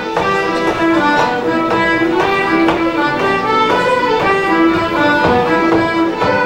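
Irish traditional music played by an ensemble of fiddles, whistles, guitar and bodhrán: a lively tune of quick fiddle and whistle notes over a steady beat of about two strokes a second.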